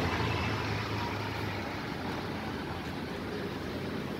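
Street traffic noise: a passing vehicle's engine hum fading away over the first second or so, leaving a steady background of road traffic.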